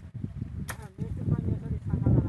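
One sharp crack about two-thirds of a second in, a blade chopping into or snapping a mesquite branch, over a steady low rumble.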